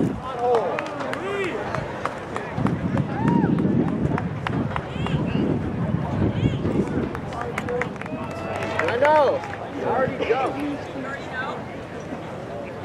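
Indistinct voices of people talking around the field, with scattered sharp ticks and taps.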